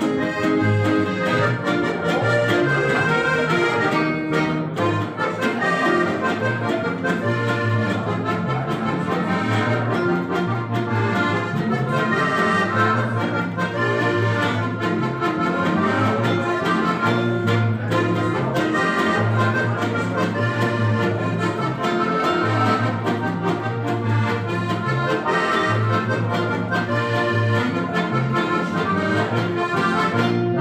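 Folk dance music played live by several accordions together, button accordions and a piano accordion, with guitar accompaniment. Steady rhythm with a repeating bass line under the melody.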